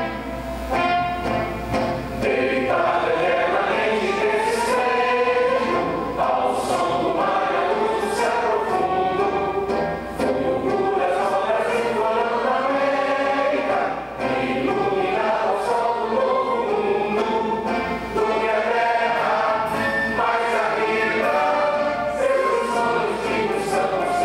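An anthem played from a recording: a choir singing with orchestral accompaniment.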